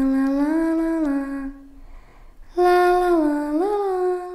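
Background music of a voice humming a slow wordless tune: long held notes stepping up and down in two phrases, the second starting about two and a half seconds in.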